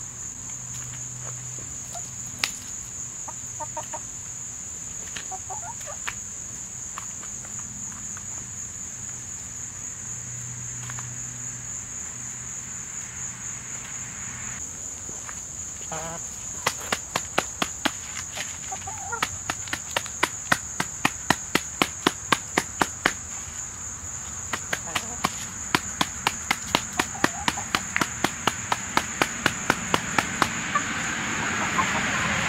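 Hens clucking softly while pecking at yellow jacket nest comb. In the second half come two runs of quick sharp taps, about three or four a second, as beaks strike the comb and the asphalt. A steady high-pitched tone runs underneath.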